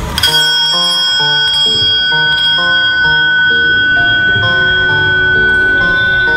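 A hanging metal bell struck once, ringing on in a long, steady high tone, over background music with a melody.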